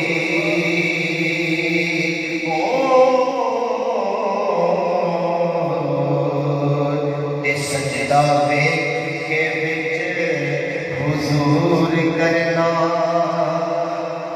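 A man chanting a naat (Urdu devotional kalaam) into a microphone, holding long notes that slide slowly between pitches, with short breaths between phrases.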